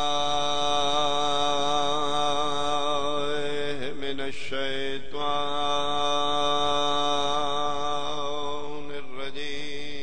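A man's voice chanting long, drawn-out held notes, each wavering at its end and sliding down in pitch about four seconds in and again near the end before the next note.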